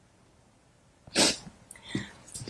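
A person's short, sharp burst of breath about a second in, after near silence, followed by a fainter breath just before the end.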